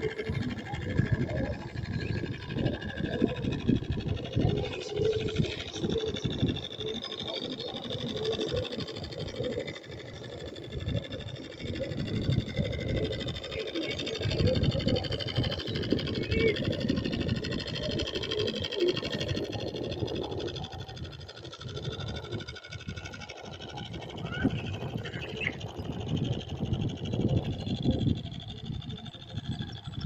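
Wind buffeting the microphone in an uneven, gusting rumble, with faint high chirps near the end.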